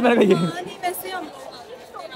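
Speech: a voice trailing off in the first half second, then quieter background chatter of several people.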